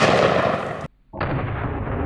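Snub-nose Smith & Wesson Magnum revolver shot, its boom echoing away until it cuts off just under a second in. Then a slowed-down replay of a shot: a deep, drawn-out boom that fades slowly.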